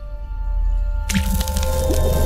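Logo sting sound effects over music: a deep bass drone with a few held tones, then a wet splat about a second in that opens into a dense wash of sound.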